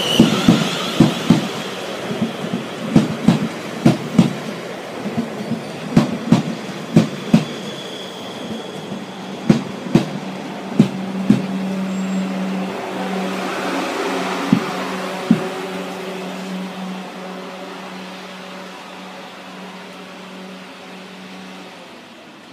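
Ten-coach Class 444 electric multiple unit running past along the platform, its wheels clacking over the rail joints in quick pairs of knocks as each bogie passes. The clacks stop about fifteen seconds in, leaving a steady low hum that fades as the train draws away.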